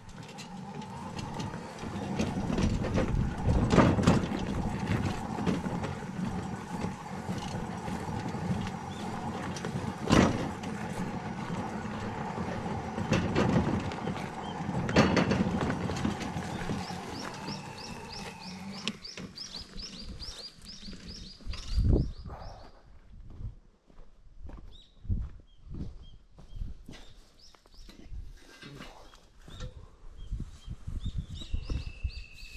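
Makita battery-powered wheelbarrow running with a steady electric motor hum as it rolls over rough gravel and grass, its wooden deck boards and steel frame clattering at the bumps. A bird chirps briefly, and a little past halfway the motor stops, leaving scattered knocks.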